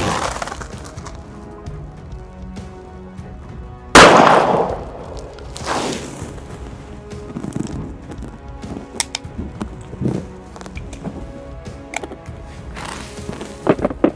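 Revolver shots fired one-handed, one right at the start and a louder one about four seconds in, followed by a few lighter clicks and knocks, over quiet background music.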